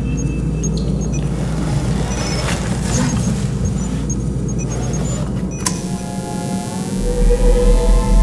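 Designed machine-room ambience: a steady low mechanical hum with scattered small electronic beeps and clicks. About three-quarters of the way in, a sharp click cuts it off and a sustained synthesizer drone swells in, with a deep bass rising near the end.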